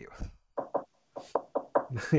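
Knuckles knocking on wood several times, two raps and then a quicker run of about five, a superstitious 'knock on wood'.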